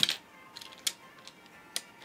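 Toy fingerboard clacking on a windowsill as ollie tricks are done: three sharp clicks about a second apart, the first the loudest.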